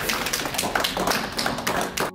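A small group of people applauding, a dense, uneven patter of hand claps.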